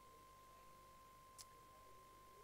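Near silence: room tone with a faint steady whine, and one brief faint click about one and a half seconds in.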